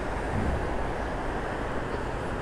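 Steady outdoor background noise: an even low rumble with a hiss over it, with no distinct event standing out.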